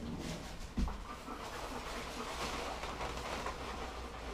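German Shepherd dog panting steadily, with a single dull thump a little under a second in.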